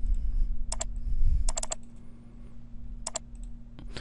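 Sharp clicks from computer controls as the Start menu is opened: single clicks and a quick run of three or four, over a steady low hum, with a low rumble in the first second and a half.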